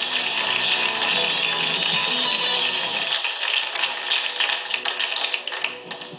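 Live studio band playing walk-on music, with clapping joining in over the second half as the music dies away. The sound drops sharply just before the end.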